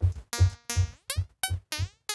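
A synth click from Operator fed again and again into a delay with a very short delay time and high feedback. Each click rings out as a buzzy pitched tone, about four hits a second, and the pitch slides downward in the second half as the delay is adjusted. A soft tap from a MIDI controller key sits under each hit.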